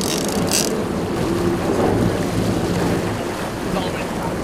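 Sportfishing boat's engine running with a steady low hum, mixed with wind on the microphone and the wash of the sea; two short bursts of noise in the first second.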